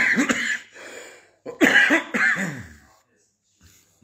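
A man coughs and clears his throat with his hand over his mouth, in two short bouts about a second and a half apart.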